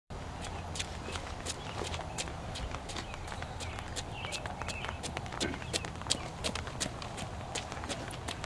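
A rapid, irregular series of sharp clicks and taps, roughly four a second, over a steady low rumble.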